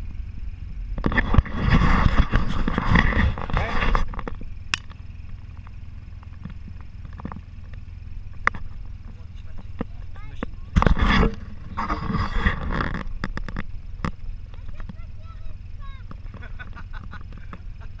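Polaris RZR side-by-side engine revving hard in surges as the vehicle labours up a muddy riverbank out of the water, with a loud surge early on and two shorter ones past the middle. The driver is pushing hard enough to risk wrecking the CVT drive belt.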